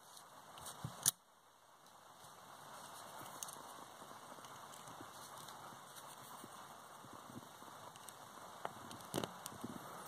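Handling of alligator clips on spark plugs: one sharp click about a second in, then a faint steady hiss with a few light ticks near the end.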